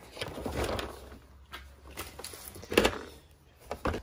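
Handling noise around an open hard plastic tap and die case: a rustle in the first second, then light clicks and one sharper knock about three seconds in.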